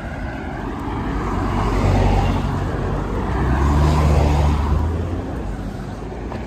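A motor vehicle driving past, its engine hum and road noise swelling to two peaks and then easing off.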